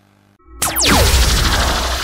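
Logo sting sound effect: after a brief lull, a sudden whoosh with tones sweeping steeply down in pitch over a deep low boom, settling into a fading wash with held ringing tones.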